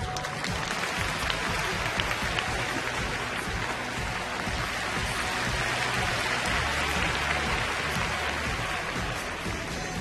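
Arena audience applauding over music. The clapping swells through the middle and eases off near the end.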